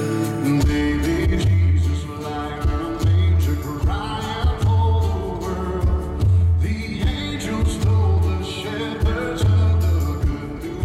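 Live rock band playing with a male lead vocal sung into a microphone. Guitars and keyboard fill out the sound over a low bass and drum beat that comes in about half a second in and pulses about once a second.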